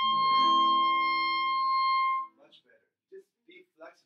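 A clarinet holds one high note over a sustained piano chord for about two seconds, then both stop, with a few short bits of talk after. It is the high note being worked on as too bright, tried again with the half-hole fingering for more resistance.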